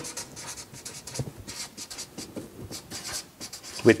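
Felt-tip marker writing on brown paper: a run of short, irregular scratchy strokes as a line is drawn and words are written.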